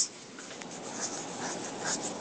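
Faint scratchy strokes of writing with a pen or pencil, a few short irregular scrapes at a time.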